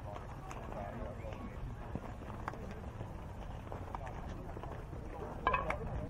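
Distant voices of players and spectators calling and chatting around a baseball field, over a steady low rumble of outdoor air. A louder call comes near the end.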